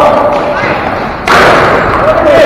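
Ball hockey play in a gymnasium: players' voices calling out, then a sudden loud thud about a second and a quarter in, from the ball or a stick striking in play.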